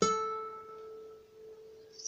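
A single note plucked on a nylon-string classical guitar: the first string at the fifth fret (A), ringing out and slowly fading.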